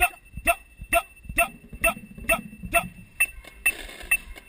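Amplified metronome clicking a steady beat, a little over two short ringing clicks a second, keeping time for the marching band at rehearsal.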